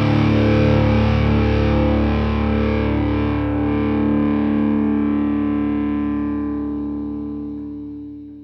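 Distorted electric guitar and bass holding a final chord that rings out and slowly fades away, the ending of a stoner doom song.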